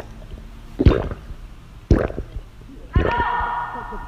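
A man gulping beer from a glass bottle: three swallows about a second apart. The last runs into a held vocal sound near the end.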